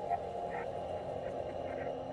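A steady, rough animal-like call from a film soundtrack, the noise that makes characters say it sounds like an animal.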